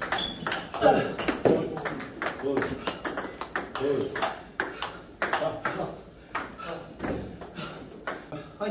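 Table tennis multiball drill: a fast, continuous run of sharp clicks as balls are fed and driven back with rubber paddles, bouncing on the table between hits.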